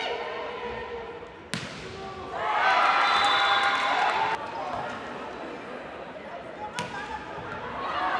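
A volleyball being struck sharply, once about a second and a half in and again near the end, in a large echoing hall. Between the hits a loud shouting voice rings out for about two seconds and stops suddenly.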